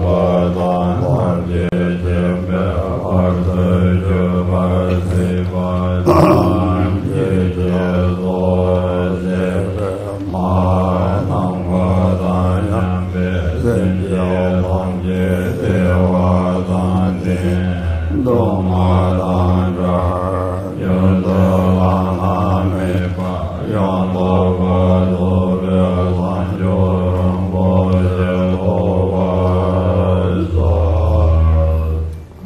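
A deep male voice chanting a Tibetan Buddhist prayer on a steady low pitch, with a few brief breaks.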